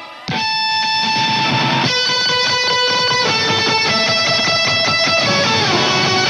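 A live rock band's next song starts after a brief pause, with electric guitar chords held and changing about every one and a half to two seconds.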